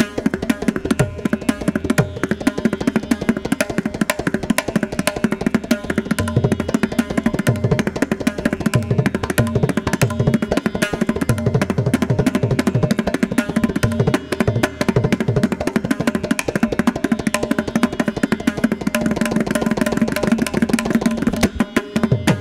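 Mridangam playing a fast, dense run of strokes over a steady drone, in a Carnatic concert.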